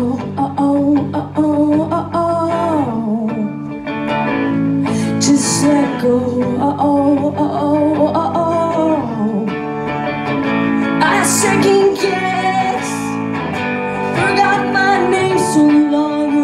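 Live solo performance on electric guitar and voice: the guitar strummed steadily under held, wordless sung notes that slide up and down in pitch.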